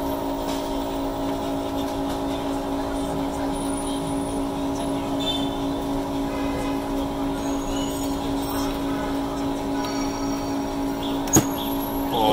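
Steady motor hum from the vacuum pump of a heated LCD screen-separator plate, which holds the screen down by suction. A single sharp click comes about a second before the end.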